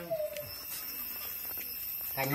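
A single short, slightly falling squeak from a small caged animal just after the start, followed by faint ticks.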